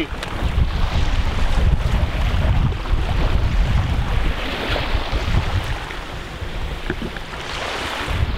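Wind buffeting the microphone over small waves washing onto the shore, with the washing hiss swelling about halfway through.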